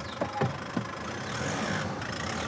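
Volkswagen Amarok pickup's engine running as the truck drives off, a steady sound slowly growing louder as it approaches, after a couple of brief sounds in the first half second.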